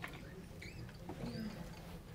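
Room noise of people moving about: a steady low hum with faint, distant voices, a click at the start, and a few short high squeaks.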